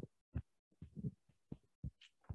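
Irregular soft thumps and bumps on a microphone, about six in two seconds, as it is handled and set up for use.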